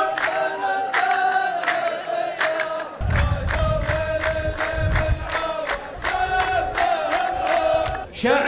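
A row of men chanting a poetry-duel verse in unison in long held notes, over steady rhythmic hand clapping that speeds up to about three claps a second. A low rumble comes in about three seconds in.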